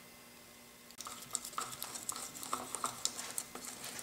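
Wooden stick stirring two-part epoxy paste in a small plastic cup: irregular light scrapes and taps against the cup, starting about a second in.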